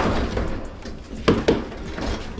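Heavy stainless-steel gas grill being hauled out of a cargo van by its side handle, with a low rumbling scrape and hard metal knocks: one at the start and two sharp ones close together about a second and a half in.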